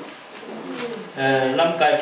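A man speaking into a microphone over a PA system, resuming after a pause of about a second.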